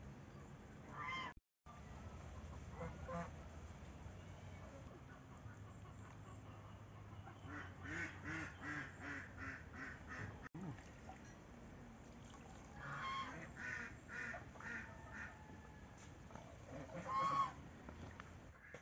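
Domestic fowl calling in runs of quick repeated calls, about three a second, around 8 seconds in and again around 13 seconds, with a single louder call near the end.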